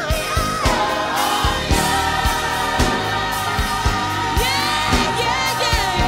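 Gospel music: choir voices singing over a band, with a steady drum beat.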